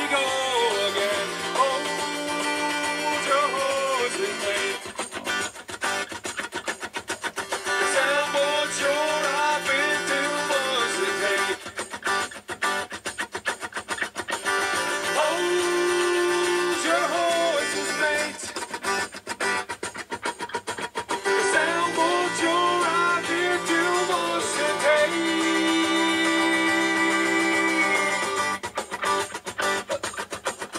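Music: a song with a singing voice over guitar accompaniment.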